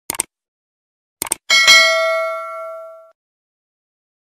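Subscribe-button animation sound effect: two quick clicks, two more about a second later, then a bell ding that rings out and fades over about a second and a half.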